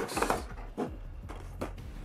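A box set case sliding out of its cardboard slipcover: a brief scraping rustle at the start, then light handling with a few small taps.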